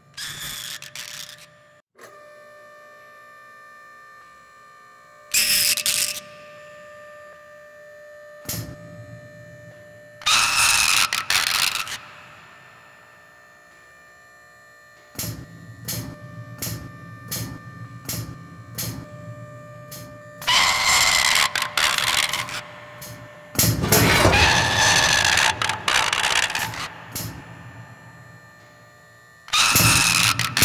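Robot sound effects for an animated robot dog: a steady electronic hum and mechanical whirring, a run of short metallic clanks for about five seconds in the middle, and several loud rushing bursts, each one to three seconds long.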